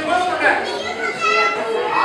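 Children's voices, talking and calling out over one another.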